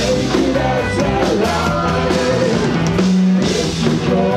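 Indie rock band playing live: a male lead vocal over electric guitars and a drum kit, loud and continuous.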